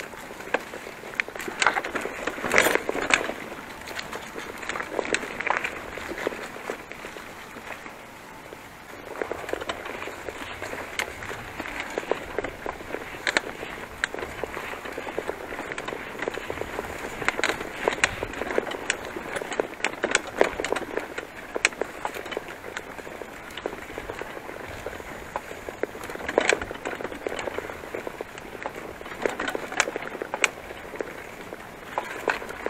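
Bicycle riding over a bumpy grass and dirt path: a steady rustle of tyres and grass, thick with small rattles and clicks from the bike jolting over the rough ground.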